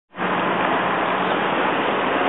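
Steady, even outdoor street noise with a faint low hum underneath.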